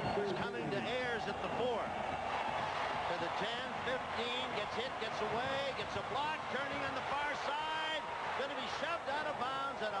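Men's voices talking throughout, as in television sports commentary, over a steady background haze of stadium noise.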